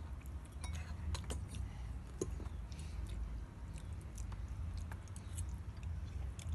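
A toddler chewing a mouthful of spaghetti, with scattered small clicks over a steady low rumble.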